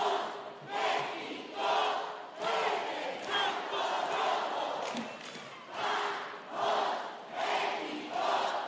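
A cheerleading squad shouting a cheer in unison, in rhythmic group shouts about one a second.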